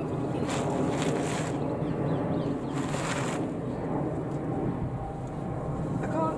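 Gusty wind buffeting the microphone, a steady rumble and rush, with two brief rustling surges, one about half a second to a second and a half in and another around three seconds in.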